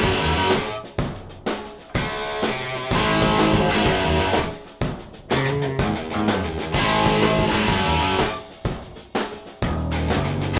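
Full rock band mix of drum kit, bass guitar and two electric guitars. One guitar part is a '71 Marshall Super Lead through a 4x12 loaded with Celestion G12M-25 Greenbacks. The other runs through stacked Marshall 1965 A and B 4x10 cabs fitted with 1970 Celestion 7442 G10 speakers.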